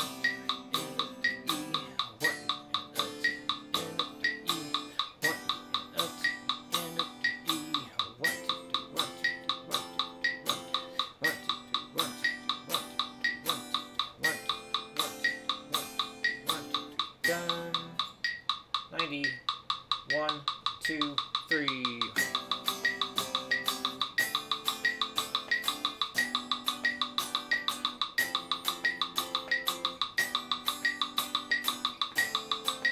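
Electric guitar playing sustained seventh chords (Cmaj7, Dm7, Em7, Fmaj7) in time with a metronome clicking at an even beat. A little past the middle the chords break off for a few seconds, with a few sliding notes, then pick up again.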